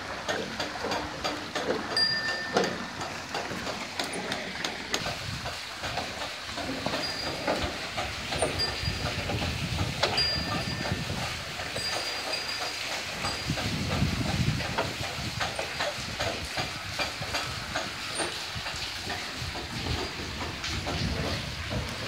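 Bullock-driven Persian wheel (rahat) turning: a steady run of clacking from its gearing and bucket chain, with short high squeaks now and then, over a continuous hiss of water spilling from the buckets.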